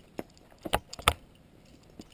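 Climbing carabiners and quickdraws clinking on a harness as the climber moves up the rock: three short, sharp clinks, the last two loudest.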